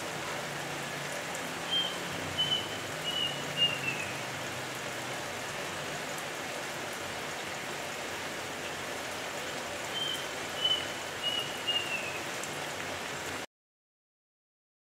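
A bird singing a short phrase of four or five whistled notes that step down in pitch, heard twice about eight seconds apart, over a steady hiss. The sound cuts off suddenly just before the end.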